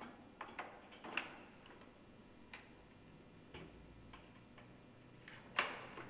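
Scattered small metal clicks and taps of locking pins being fitted to secure a line-array flying frame to a subwoofer: several in the first second, a few spaced out after, and the loudest near the end.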